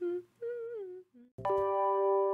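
A voice humming a short wordless tune with gliding pitch. About one and a half seconds in, a keyboard chord strikes and holds steadily.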